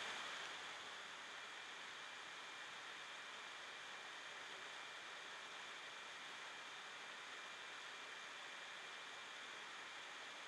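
Faint steady hiss of a recording's background noise, with a thin high steady tone under it and no other sound.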